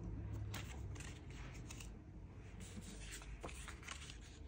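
Faint rustling and light ticks of paper: five-dollar bills and paper slips being handled on a desk.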